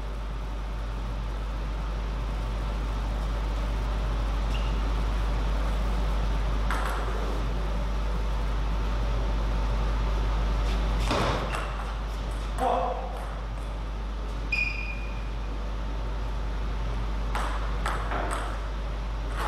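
Table tennis ball strikes and bounces: a few separate sharp knocks and short high pings over a steady low hum of the hall.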